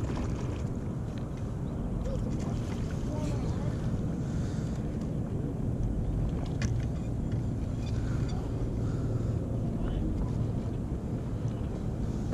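Steady low rumble of wind on the microphone, with a few faint clicks.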